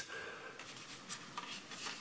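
Faint rubbing and a few light ticks of hands handling a small plastic quadcopter.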